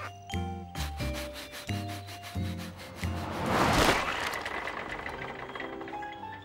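Cartoon background score with a bouncy run of short bass notes, then a rush of noise that swells and fades about three to four seconds in, the loudest moment, as a cartoon sound effect over the music.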